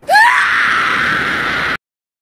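A loud, harsh, distorted scream, used as a jump-scare sound effect. It bursts in with a rising pitch, holds for about a second and a half, and cuts off suddenly.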